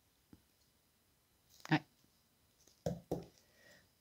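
Quiet room with a few short, soft clicks. A brief spoken 'ouais' comes a little under two seconds in, and two clicks close together follow about three seconds in.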